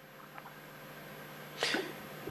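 Faint steady hiss of room tone, then about one and a half seconds in a short, sharp breath noise close to the microphone.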